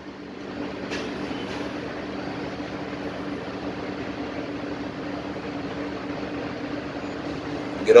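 Steady mechanical hum of a silo's powered sand-loading tube being lowered toward a trailer's fill port, picking up about a second in and holding even.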